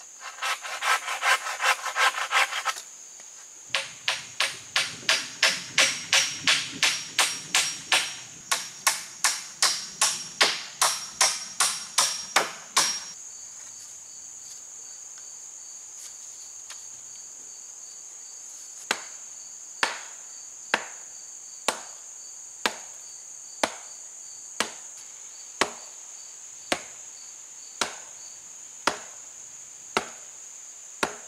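Hammer driving nails into peeled wooden poles: a quick run of ringing blows, then steadier, heavier blows about two a second until roughly halfway, then after a pause lighter blows about once a second. A steady high insect drone runs underneath.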